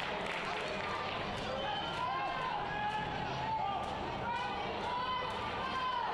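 Soccer-match field ambience: a steady background hum with faint, distant voices calling out across the pitch.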